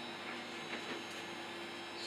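Steady electrical hum with a few faint high-pitched tones: the room tone of a studio full of running electronics.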